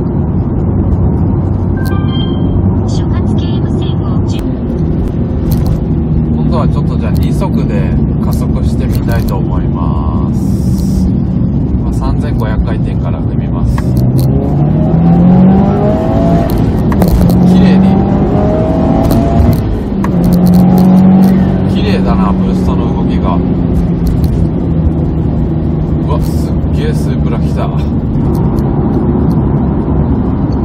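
Subaru WRX STI's turbocharged flat-four engine, heard from inside the cabin, pulling hard under boost. Near the middle the engine note rises in pitch and is loudest, breaking off briefly and climbing again, as at gear changes.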